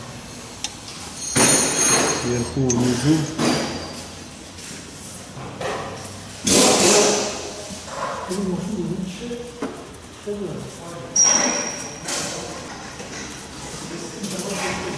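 Indistinct speech, with three short bursts of handling noise about one and a half, six and a half and eleven seconds in, as a metal fuel feed pipe is fitted to a diesel high-pressure fuel pump by hand.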